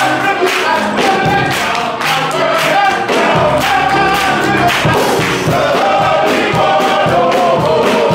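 Men's gospel choir singing over a steady beat.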